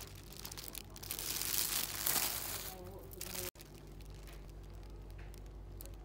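Clear plastic wrapping on a tote bag crinkling as it is handled, loudest from about one to three and a half seconds in. Around it is a steady low hum of shop background.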